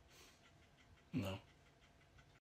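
A single short vocal sound, falling in pitch, about a second in, over faint background hiss.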